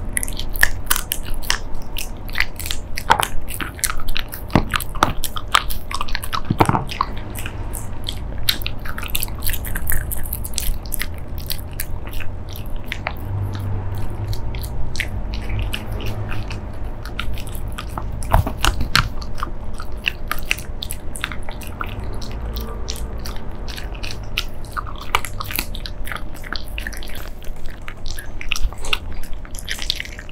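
Shiba Inu chewing dried chicken jerky slices close to the microphone: a dense, irregular run of crunches and clicks.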